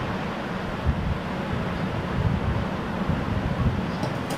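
Surf: waves crashing on the shore as a steady wash of noise, with wind buffeting the microphone in an uneven low rumble.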